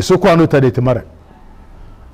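A man's voice speaking for about a second, then a pause with only faint room noise.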